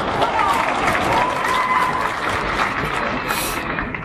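Concert audience applauding and cheering, with scattered shouts from the crowd.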